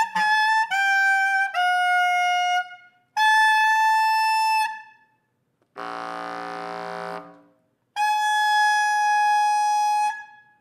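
Solo bass clarinet playing high, sustained notes: a run of notes stepping down in pitch, then long held tones with short breaks between them. About six seconds in comes one lower, rougher note with a breathy edge.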